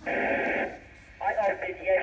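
Amateur FM radio link from the space station opening: a short hiss of radio noise lasting under a second, then, after a brief dip, a man's voice coming through the radio, thin and telephone-like.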